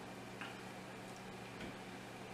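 Quiet kitchen with a steady low electrical hum and two faint ticks as raw fish fillets are handled on paper towels.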